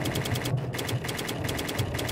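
Typewriter-style clicking sound effect for on-screen text being typed out: rapid sharp clicks, about eight a second, in runs broken by short pauses, over a low pulsing music bed.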